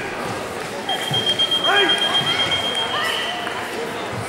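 A steady, high-pitched electronic tone starting about a second in and held for about two and a half seconds, over voices.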